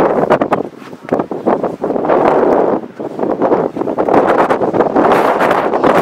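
Strong wind buffeting the camera microphone: loud, uneven rushing noise that surges and drops in gusts, briefly easing about a second in and again near three seconds.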